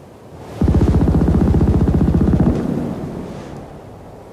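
Trailer sound-design hit: a loud, low, rapidly pulsing rattle starts about half a second in, holds steady for about two seconds, then cuts away and rings out.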